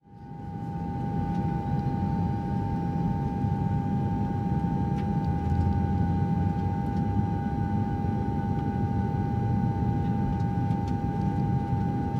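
Airliner cabin noise in flight: a steady low rumble with a constant high whine, fading in over the first second.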